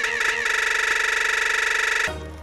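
A loud, buzzy, horn-like sound from the cartoon soundtrack. It wavers for a moment, then holds one steady note and cuts off sharply at the end.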